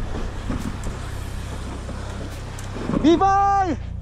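Wind and sea noise on the microphone, then about three seconds in a person shouts one long, held call, rising at the start and falling away at the end.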